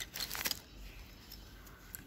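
Light clicks and small rattles of stationery being handled in a pencil pouch as a plastic ruler is taken out, mostly in the first half-second, then only faint rustling.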